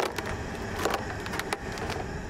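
Working sounds on a fishing trawler's deck: a steady low rumble with scattered sharp knocks and clicks.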